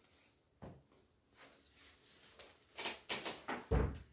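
A leather sword belt being unbuckled and pulled off over a mail-and-cloth costume: a few short clicks and rustles near the end, then a dull thump just before the end.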